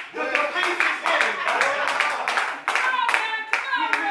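Hand claps, a few a second and somewhat uneven, over a man preaching loudly into a microphone.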